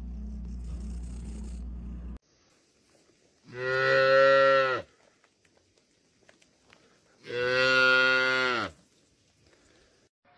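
A cat's steady low purr, cut off about two seconds in, followed by two long, low, moo-like animal calls, each just over a second long and held at one pitch, about three seconds apart.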